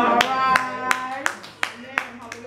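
Hand clapping in an even rhythm, about three claps a second, six in all. Over the first part a woman's voice holds one long drawn-out note through the microphone, then fades.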